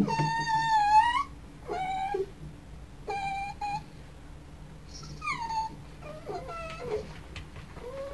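Miniature dachshund whining in a series of about six high whimpers. The first is about a second long and rises at its end; the rest are shorter, one gliding down in pitch a little after the middle.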